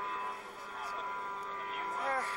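Background ambience: a steady hum with faint voices in the distance.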